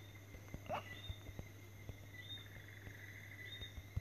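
Faint, irregular ticks of fingertips tapping a phone's touchscreen keyboard, over a steady low hum and repeated high chirping of night insects.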